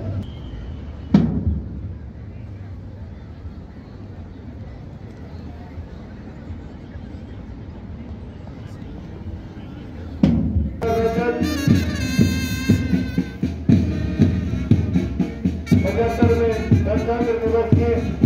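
Open-air background hum with a single sharp knock about a second in. About ten seconds in, march music starts up, with sustained pitched tones over regular drum beats.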